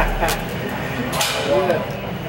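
Gym background with a few short metallic clinks, as of weights knocking together, and a voice briefly heard in the background.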